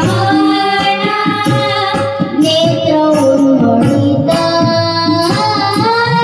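Child singers performing a Marathi devotional song with harmonium and hand-drum accompaniment: held, gliding sung notes over a continuous drum rhythm.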